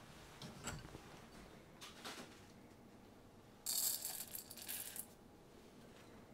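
Dry rice koji grains poured into a glass bowl on a kitchen scale: a dense, crackling rattle of grains hitting glass, starting a little past the middle and lasting about a second and a half, after a few soft knocks of handling.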